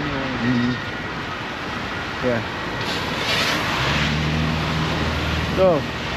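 Road traffic on a wet road: a passing vehicle's tyre hiss swells about three seconds in, followed by a vehicle's low, steady engine drone lasting a second or two.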